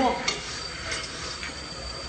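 Cycle ergometer pedalled hard in a sprint: the flywheel runs with a steady high whine, and a few sharp metallic clicks and rattles come from the machine.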